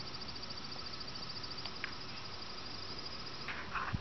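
Faint, steady outdoor background with a high, fast-pulsing insect trill, as of crickets.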